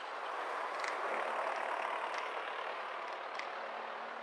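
City traffic noise heard from a car stopped at an intersection: a steady rush of vehicles, with a few faint clicks and a low steady hum coming in about a second in.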